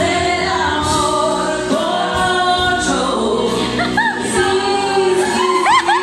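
A woman singing live into a microphone over a karaoke backing track, with music playing throughout.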